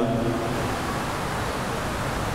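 Steady, even hiss of background noise with no distinct events: room tone of the amplified church, heard in a pause between spoken sentences.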